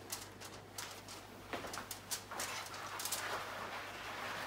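Faint rustling and crinkling of aluminium foil with scattered light clicks, as hands lift a paint-soaked chain off the foil sheet.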